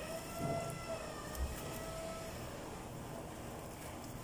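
A rooster crowing once: one long, steady-pitched call over the first two seconds that falls a little as it ends. A dull low thump comes about a second and a half in, over the soft sounds of wet cloth being handled.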